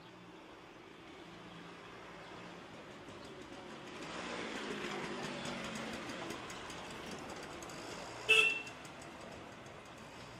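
Street traffic noise, swelling as a vehicle passes about four seconds in, then a single short, loud vehicle horn toot near the end.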